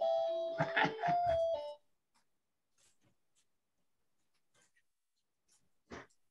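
A doorbell-like electronic chime: a few held tones stepping from one pitch to another, with laughter over them, cut off abruptly about two seconds in. Near silence follows, with a faint click near the end.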